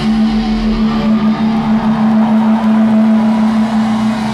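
A live metal band holding one sustained, steady droning note through the PA as a song ends. The heavy low end drops away just after the start, leaving the held note ringing.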